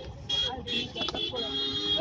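A vehicle horn honking in several short blasts of a steady, even pitch, with a couple of sharp clicks between them.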